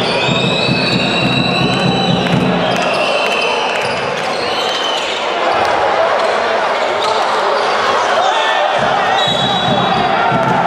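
Basketball game in a large sports hall: a ball bouncing on the hardwood court under loud, continuous crowd noise with shouting. Several held high-pitched squeals come through, mostly in the first two seconds.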